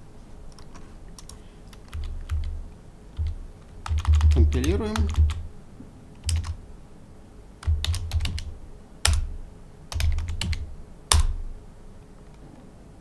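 Computer keyboard typing in short, irregular runs of keystrokes with dull thumps, as a shell command is typed into a terminal and entered.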